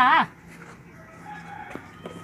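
Farmyard animal calls: a loud call with a wavering pitch cuts off about a quarter second in, followed by a fainter, drawn-out call in the background.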